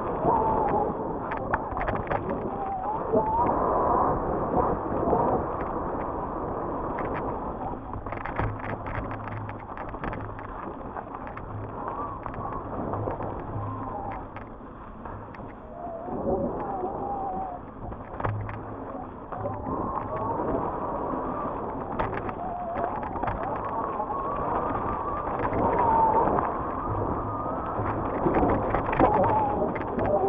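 Mountain bike riding fast down a dirt singletrack: a steady rush of tyre and ride noise with frequent rattles and knocks as the bike goes over bumps.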